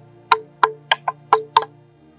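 Six sharp knocks in quick, uneven succession, over a steady musical drone.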